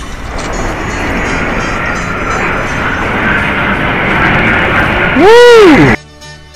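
Jet aircraft flying overhead: a rushing noise that grows steadily louder over about five seconds. Near the end comes a very loud, short tone that rises and then falls in pitch, and the sound cuts off abruptly.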